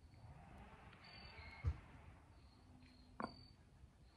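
Quiet outdoor ambience with faint, short, high insect chirps recurring, and two soft knocks, one about a second and a half in and one about three seconds in.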